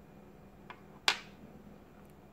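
Small parts of a disassembled wall light switch clicking as a brass contact piece is pried loose with a small screwdriver: a faint tick, then about a second in a single sharp, loud click with a short metallic ring.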